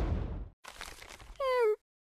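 A single short cat meow about a second and a half in, pitched and falling slightly, heard just after a louder sound fades out.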